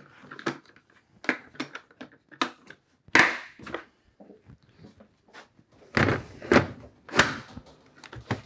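Milwaukee Packout plastic tool cases being handled: lid latches clicked shut and cases lifted and set down, a run of sharp plastic clicks and knocks, the loudest a little after three seconds and again around six to seven seconds.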